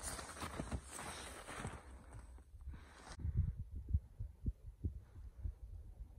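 Footsteps crunching on a snowy trail, then from about three seconds in, irregular low thumps on the microphone.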